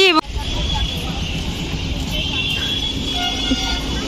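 Road traffic noise, a steady low rumble, with faint high vehicle horns tooting now and then, the clearest about two seconds in and again just after three seconds.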